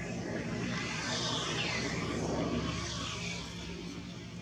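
A distant engine drone, the kind an aircraft passing overhead makes, swells toward the middle and then fades. Over it come a couple of faint high squeals falling in pitch, from an infant long-tailed macaque being handled.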